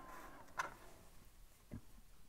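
Two faint ticks of metal lock-picking tools being handled at a padlock's keyway, one about half a second in and one near the end, over quiet room tone.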